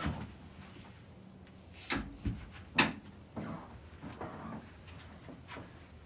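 A door being opened: three sharp clicks and knocks in quick succession about two seconds in, followed by a few softer knocks.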